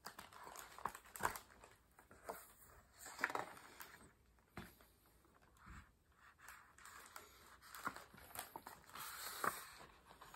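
Faint rustling and scattered light clicks of a hardcover picture book being handled and its page turned.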